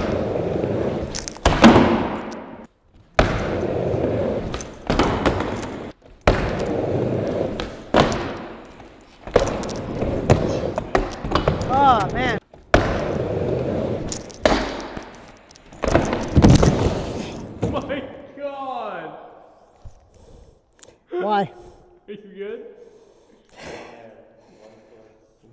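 Skateboard wheels rolling on a wooden mini ramp, with sharp clacks and thuds of the board popping and landing, over several separate runs that break off abruptly. The hardest thud comes about sixteen seconds in. Then a man makes short pained vocal sounds without words.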